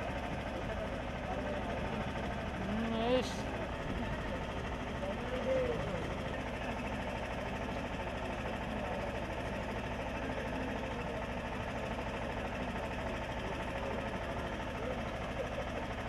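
Indistinct chatter from a gathering of people, with a few brief voices standing out, over a steady low mechanical hum.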